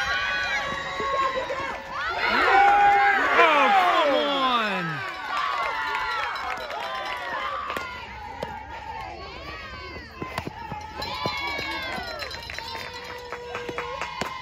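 Crowd of many high-pitched voices shouting and cheering together, loudest and densest about two to five seconds in, then thinning to scattered calls and chatter.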